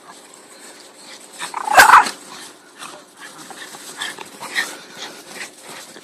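A dog gives one loud bark about two seconds in, then a few faint, short high-pitched yips.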